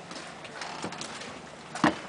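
Faint background hiss with a little quiet scuffing, then one short sharp click near the end.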